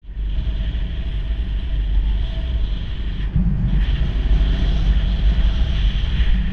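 Wind rushing over the camera microphone on a moving motorcycle, with a steady low rumble from the ride. The upper hiss eases briefly a little past halfway.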